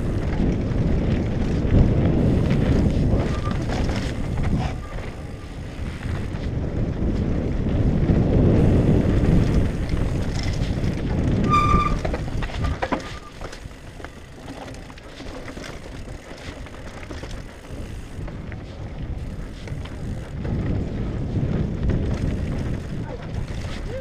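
Mountain bike descending a rocky dirt trail, heard from a helmet camera: wind on the microphone and tyres and frame rumbling over the ground, swelling and easing with speed. About halfway through comes a short, high brake squeal, a noise the rider says his brakes always make.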